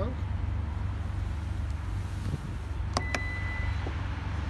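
Two sharp clicks about three seconds in, followed by a single steady electronic beep lasting just under a second, over a constant low rumble.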